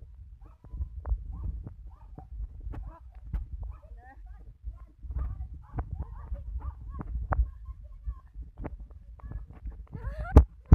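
Phone carried at a run on a concrete road: footfalls and handling rumble, with many short yelping whimpers from a dog running alongside.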